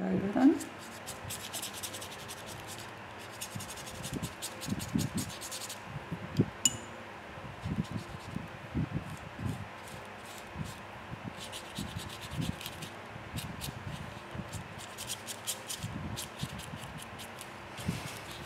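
Paintbrush scrubbing paint onto old sheet-music paper: a dry rubbing scratch in many short strokes, with a single light clink about seven seconds in.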